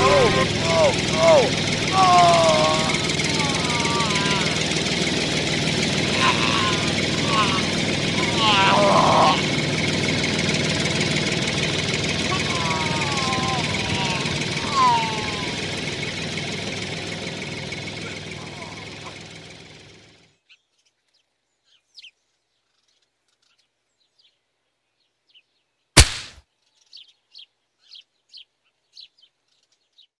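Tractor engine running steadily while a voice makes drawn-out, wordless rising and falling calls over it. Everything fades out to silence about twenty seconds in. A single sharp click follows near 26 seconds, then a few faint ticks.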